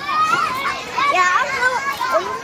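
Children's high-pitched voices, talking and calling out as they play.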